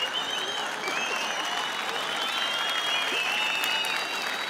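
A large audience applauding after a joke, with high whistling tones over the clapping.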